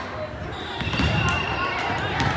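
Echoing chatter of many voices in a large gymnasium, with a few sharp smacks of volleyballs bouncing or being hit on the hardwood court.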